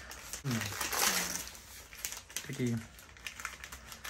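Gift wrapping paper crinkling and rustling as it is pulled open by hand, with the densest crackling about a second in and lighter rustles after. A short spoken "yes" comes over it.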